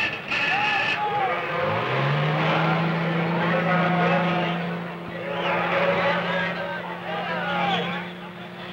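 A truck engine rises in pitch about two seconds in and then holds a steady drone, with a crowd's shouting voices over it.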